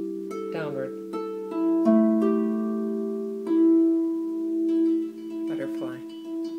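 Stoney End double strung harp played slowly in open fifths, single plucked notes ringing on and overlapping one another.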